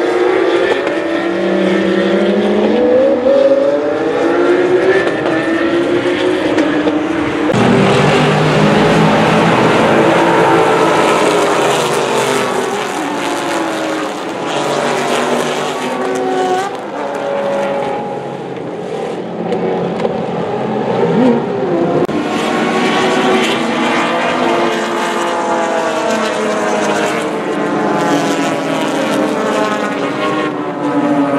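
Racing car engines at speed going past trackside, their pitch rising and falling as they shift and pass. Near the start it is a single Porsche 911 GT3 Cup car; later it is a pack of sports and touring cars running close together, several engines overlapping.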